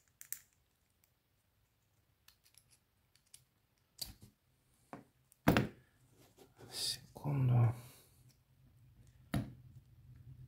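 Scattered small metal clicks and taps from a euro-profile lock cylinder and hand tools (a pick-type tool, then needle-nose pliers) being worked while its retaining rings are removed. About five and a half seconds in comes one sharp knock, the loudest sound, followed by a longer scraping sound.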